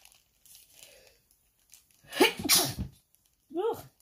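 A woman sneezes once, loudly, a little over two seconds in, followed by a short voiced sound.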